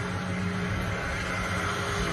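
Steady low rumble of idling vehicles outdoors, an even hum without breaks.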